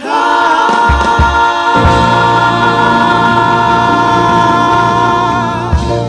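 Gospel praise singers holding one long closing chord in harmony, backed by keyboard and electric bass guitar, which enters with low notes about a second in and then holds under the voices.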